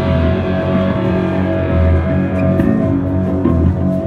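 Live punk band playing an instrumental passage without vocals, the amplified guitars to the fore over bass notes.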